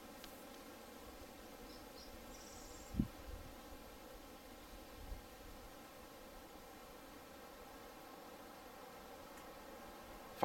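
Faint, quiet woodland ambience: a low steady hiss with a brief high insect buzz about two seconds in, and a soft low thump at about three seconds.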